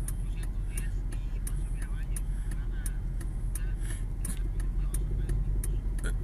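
Pickup truck cabin at low driving speed: a steady rumble of engine and road noise, with faint, sharp high ticks about four times a second.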